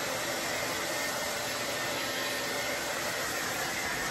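Handheld hair dryer running steadily, blowing air through damp hair: an even rushing blow with a faint high whine in it.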